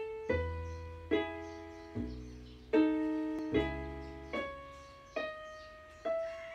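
Casio electronic keyboard playing in a piano sound: chords struck one after another about every second, each ringing and fading, with low bass notes entering under them three times.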